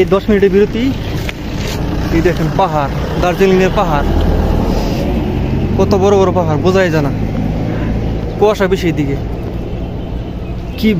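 A man talking to the camera in short phrases, over a steady low rumble.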